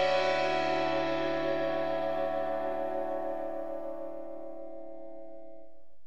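Break music: a final chord struck just before rings on and slowly fades away, dying out near the end.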